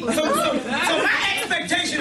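Speech only: a man talking in a continuous monologue.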